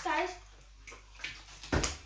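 A child's brief vocal sound, then a quiet stretch and a single sharp knock near the end.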